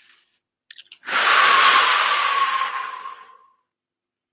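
A man breathing out in one long, audible sigh close to a headset microphone: the deliberate deep breath that closes a round of EFT tapping. A faint whistle runs through the exhale, and a couple of faint clicks come just before it.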